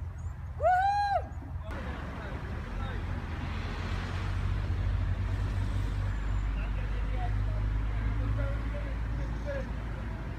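A short, loud call that rises and falls in pitch, then a steady low engine rumble from a narrowboat's diesel that builds up after a second or two and holds, with faint small chirps above it.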